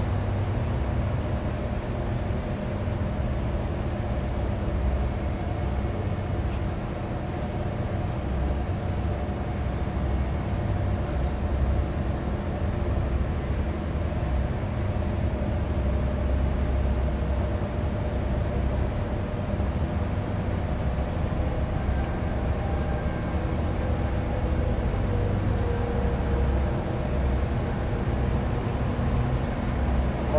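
Steady low hum of running commercial-kitchen machinery: a low rumble with several held tones over it, unchanging throughout.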